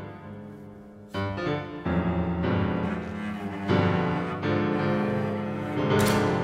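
Solo piano and solo cello playing contemporary concert music: the piano strikes sharp chords about one, two and nearly four seconds in, each left to ring, over a sustained low cello line.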